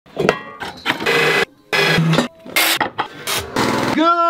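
Workshop power tools working metal, heard as a series of about five short bursts that start and stop abruptly.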